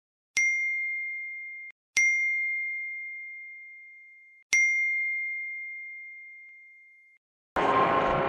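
Three message-notification dings, each a single bright chime that rings and fades. Music starts suddenly near the end.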